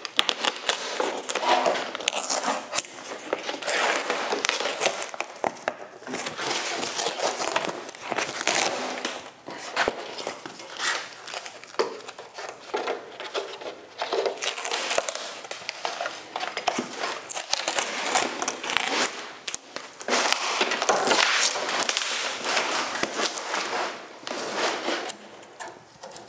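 Old aircraft covering fabric being peeled and torn off a wooden biplane wing, where it was glued on with Poly-Fiber adhesive, in repeated irregular rips and crackles.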